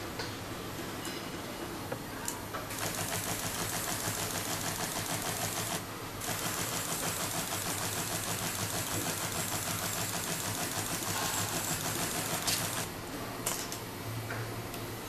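Spray gun spraying in two long bursts: a steady hiss with a fast flutter, about three seconds and then about six and a half seconds, followed by a couple of short spurts. A low steady hum runs beneath.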